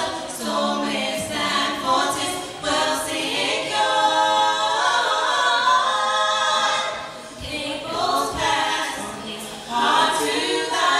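Four-woman vocal group singing unaccompanied in harmony. The singing thins out about seven seconds in and comes back full near the end.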